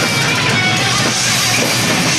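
Live crossover thrash band playing loud and dense: distorted electric guitar over a drum kit with steady, fast hits, heard through a camcorder microphone in the crowd.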